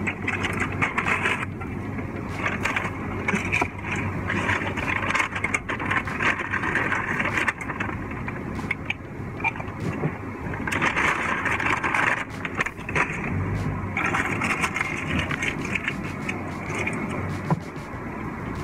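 A car idling, heard from inside the cabin as a steady low hum, with irregular rustling and clicking as things are handled in the seat.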